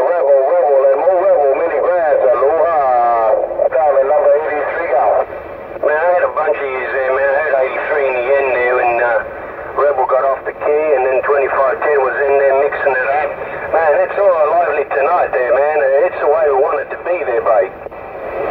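Voices of other stations coming over a Cobra 148GTL CB radio's speaker: thin, narrow-band radio speech, talking almost without a break and hard to make out.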